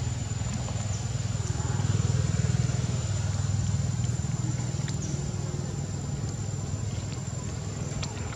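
Low, steady engine rumble of a motor vehicle, swelling about two seconds in and easing off again. A thin, steady high-pitched whine runs underneath.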